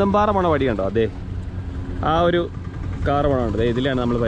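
A man talking, in short phrases with pauses, over a steady low hum.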